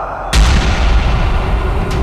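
A gunshot sound effect about a third of a second in: a sudden crack with a long, deep rumbling boom after it, and a second short crack near the end.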